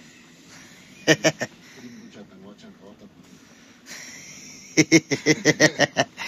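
Laughter in short rapid bursts: a brief laugh about a second in and a longer run of quick laughs near the end, with low murmured talk between.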